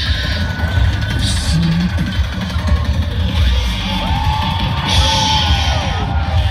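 Hard rock band playing live at full volume: pounding drums and bass with electric guitars, heard from the audience.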